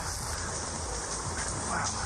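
Dry brush rustling and scraping past a handheld camera as a person scrambles through it, with a steady low rumble of handling noise under the rustle.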